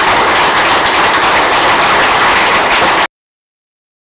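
Audience applauding steadily, cut off suddenly about three seconds in.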